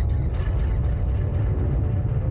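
Film trailer soundtrack: a loud, steady deep rumble with faint sustained music tones above it.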